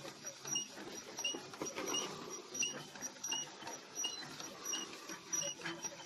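A short, high chirp or squeak repeating evenly about every three-quarters of a second, over a low murmur.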